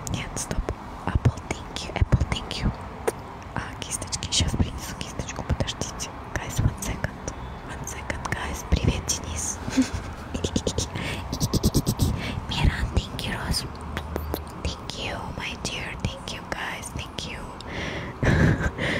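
Whispering and wet mouth sounds close into a microphone: quick lip smacks and tongue clicks in a dense, irregular patter, with breathy hiss between them.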